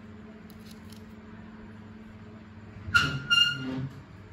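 Two short, loud high-pitched squeaks close together about three seconds in, over a steady low room hum.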